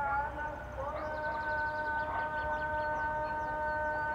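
A steady held tone on one pitch comes in about a second in and stays level, over faint high bird chirps.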